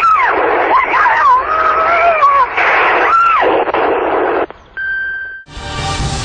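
Muffled, narrow-sounding din with high wailing tones that rise and fall, then a single short steady electronic beep about five seconds in, after which loud music starts just before the end.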